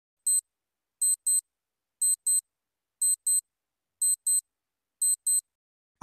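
Clock tick-tock sound effect counting down the answer time: a sharp, high double tick about once a second, six times in a row, with silence between.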